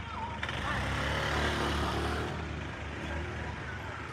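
A car driving past at close range: engine hum and tyre noise build, peak about midway and fade away.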